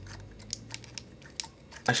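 Plastic parts of a Voyager-class Transformers figure clicking as they are moved and pegged together by hand: about five sharp, separate clicks over a low steady hum.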